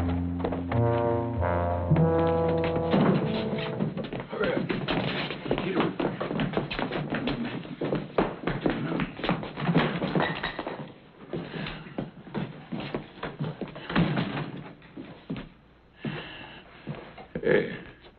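Film soundtrack: a couple of seconds of orchestral score, then a brawl's sound effects, with dense, irregular punches, thuds and knocks for about ten seconds that thin out near the end.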